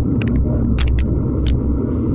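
Wind buffeting an action camera's microphone on a road bike at nearly 50 km/h, a heavy steady low rumble mixed with tyre and road noise, broken by irregular sharp ticks several times a second.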